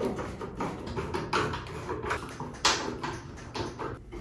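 Hand screwdriver backing out Phillips screws from a dryer's sheet-metal cabinet: light, irregular metallic clicks and scraping, with one sharper click partway through.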